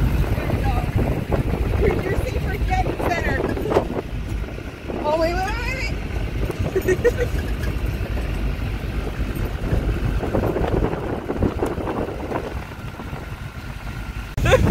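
Wind buffeting the microphone over the steady rumble of a moving pickup truck, heard from its open bed, with snatches of voices and a rising vocal whoop about five seconds in.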